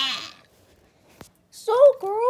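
A child's drawn-out vocal sound, falling in pitch, fades out in the first half second. Then near silence with a single click, and a child's high voice with rising and falling pitch starts near the end.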